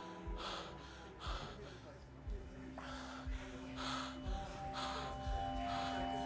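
A group of performers breathing out sharply together, about once a second, with low thuds under many of the breaths. Music of long held notes sounds underneath, with new notes coming in about halfway through.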